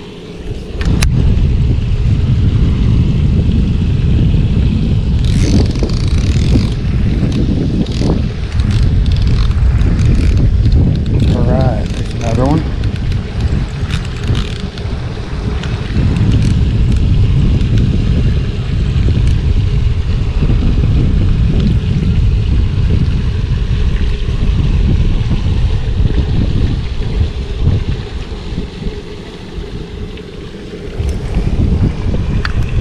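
Wind buffeting the microphone: a loud, steady low rumble that eases off just before the end, with a few faint clicks over it.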